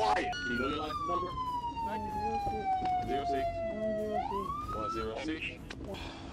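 Police siren wailing: a long, slow fall in pitch, then a quick rise again about four seconds in, with voices underneath.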